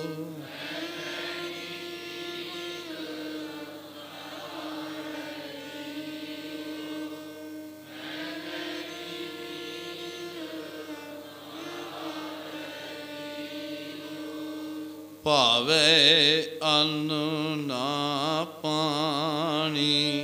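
Sikh devotional kirtan: steady held accompanying notes, changing pitch every few seconds, then about fifteen seconds in a man's singing voice comes back in, louder, with a strongly wavering, ornamented melody.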